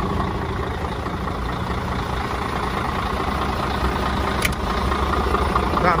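Heavy diesel truck engine idling steadily, heard from beside the cab. One sharp click about four and a half seconds in.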